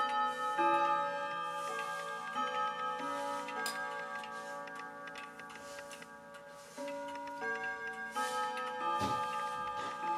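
Mechanical wall clock chiming: its hammers strike tuned rods one after another, each note ringing on and overlapping the next, in two runs with a quieter spell between them, over the ticking of the movement.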